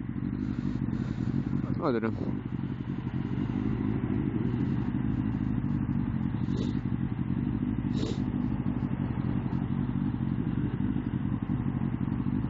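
Motorcycle engine running steadily at low revs while the bike creeps along in queued traffic.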